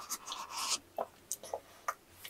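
A yakgwa scraped through firm ice cream in a paper tub, a scratchy scooping sound in the first half, then a few short clicks and taps.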